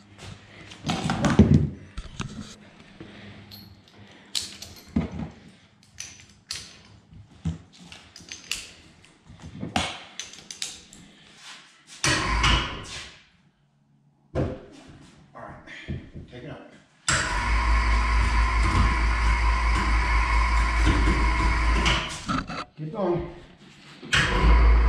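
Ceiling-mounted electric hoist motor running steadily for about five seconds near the end, a whine over a deep hum, moving a rooftop tent hanging on straps, then cutting off. Before it, scattered knocks and clicks of straps and hardware being handled.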